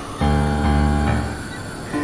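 Experimental synthesizer music: a loud, low chord of held tones comes in suddenly just after the start and fades away after about a second, over a noisy, hissing texture.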